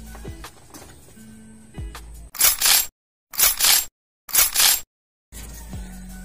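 Quiet background music, then three short bursts of hissing noise, each about half a second long and about a second apart, with dead silence between them. The silence between the bursts points to a sound effect added in editing.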